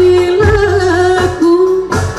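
A woman singing a gambus-style qasidah song with live accompaniment from keyboards and small hand drums. She holds a long note at the start, then moves into an ornamented, wavering line over low drum beats.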